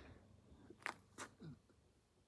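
Near silence, with two faint clicks about a second in.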